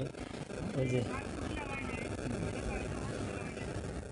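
Faint, distant voices of people talking over a steady low rumble of outdoor background noise.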